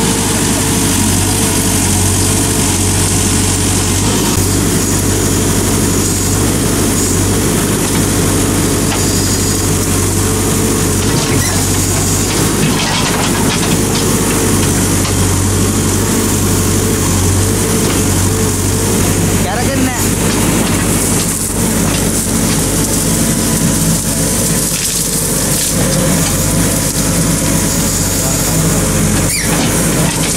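A backhoe loader's diesel engine running steadily throughout, with people's voices faintly underneath.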